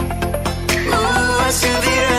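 Pop music playing, with a steady beat and bass line; a brighter melody comes in about a second in.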